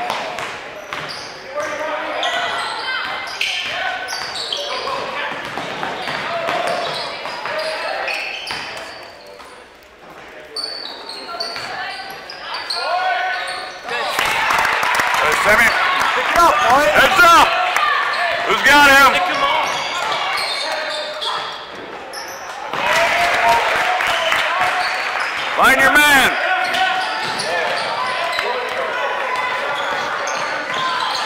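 Basketball game in a gym: a ball bouncing on the hardwood, sneakers squeaking, and spectators' voices, all echoing in a large hall. It gets louder about halfway through.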